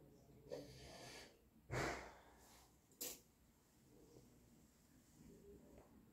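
Quiet room with a person breathing out sharply through the nose about two seconds in, a softer breath before it, and a short sharp click about a second later.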